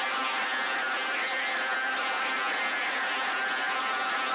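Ambient music intro: a steady, hazy drone of several sustained tones over a hiss-like wash, with no drums or bass.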